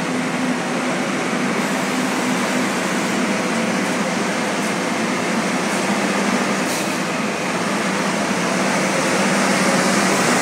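Tour bus idling at close range: a steady low engine hum under a constant rush of air, rising slightly near the end.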